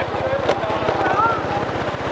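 Small motorbike engine running steadily as the bike rides along a street, heard as a fast low pulsing, with some wind on the microphone.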